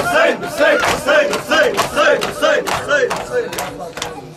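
A group of men chanting in unison in a repeating rising-and-falling phrase while beating their chests with open hands in rhythm (matam). The chant and the slaps fade near the end.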